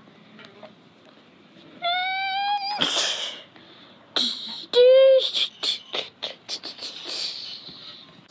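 A child making high-pitched vocal sound effects: a held, slightly rising squeal about two seconds in, a hissing burst, then a second short, loud squeal about five seconds in, followed by a rapid run of sharp clicks.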